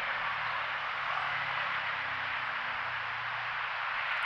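Steady city street noise: a constant wash of traffic with a faint low engine hum underneath, no single vehicle standing out.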